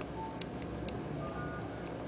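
Three quick clicks in the first second, then short paired beeps near the end, over a steady low hum: keypad presses on a Nokia N73 mobile phone.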